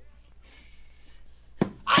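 A pause in an unaccompanied vocal recording: a steady low tape hum and a faint hiss, then a sharp click about one and a half seconds in as the male voice starts again near the end.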